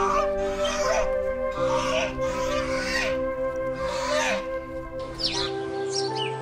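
Background music of held, sustained chords. Over it comes a series of harsh bird calls, roughly one a second, and then a few quick high chirps near the end.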